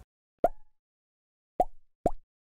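Two short pop sound effects about a second apart, each dying away quickly.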